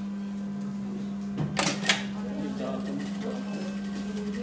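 Industrial lockstitch sewing machine running with a steady hum, with a few sharp clacks about one and a half to two seconds in, while mask fabric is fed under the needle.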